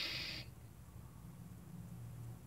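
A person's breathy exhale fading out in the first half second, then quiet with only a faint steady low hum.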